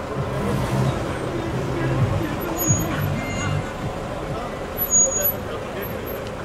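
Street ambience: a vehicle engine running in traffic, with men's voices talking in the background and a brief louder noise about five seconds in.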